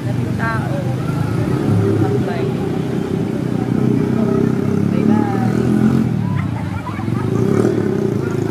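Motorcycle ride heard from the bike: a steady low engine and road rumble with faint voices in the background.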